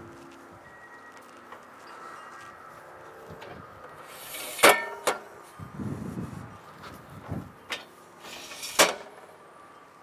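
Metal extension arms of a DeWalt compact miter saw stand being slid out, each slide ending in a sharp clack as the arm stops: once about halfway through and again near the end. Softer knocks from handling the stand come in between.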